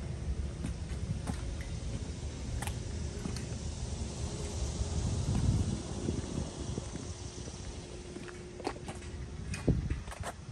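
Footsteps on brick paving: light clicks about every two-thirds of a second, over a steady low rumble and a faint hum.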